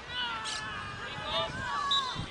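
High-pitched women's voices calling and shouting across a field hockey pitch, too far off to make out words.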